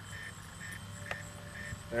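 Faint electronic beeping from a sonic alarm on a descending high-power rocket: short high beeps repeating about three times a second, with a single click about a second in.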